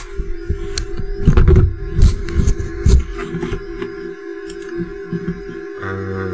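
Camera being handled and moved closer: bumps and rubbing on the microphone, loudest between about one and three seconds in, over a steady hum from the bench equipment.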